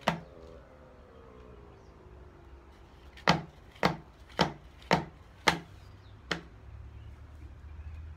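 Plastic tub of wet cement mix knocked against a tabletop to bring air bubbles out of the cement: five sharp knocks about half a second apart, then a lighter one.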